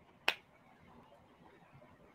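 A single sharp click about a third of a second in, over quiet room tone.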